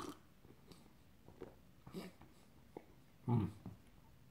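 Faint lip smacks and small mouth clicks from someone tasting a sip of beer, then a closed-mouth "mm" of approval near the end.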